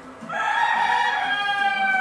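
A single long, high-pitched animal call, held for about two seconds and falling in pitch at the end, over faint background music.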